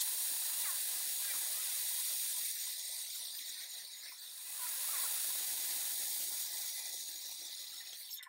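Lathe taking a facing cut on a chuck back plate: the cutting tool shearing metal with a steady hiss, easing a little about midway and building again.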